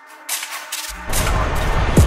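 Gusting wind buffeting the camera microphone as a loud low rumble with crackling. It is cut off at first and comes back strongly about a second in.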